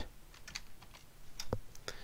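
A handful of separate, faint computer keyboard keystrokes, spaced out rather than in a fast run.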